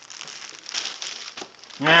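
Clear plastic bag crinkling and crackling as it is handled.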